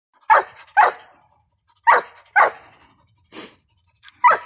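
A young Mountain Cur hound barking up a tree, treeing a baby squirrel. The barks come in pairs, two and then two more, with a fainter fifth near the end.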